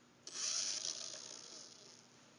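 Blade mCX2 micro coaxial RC helicopter's small electric motors and rotors: a sudden high whirring starts about a quarter second in and then fades away as the rotors spin down.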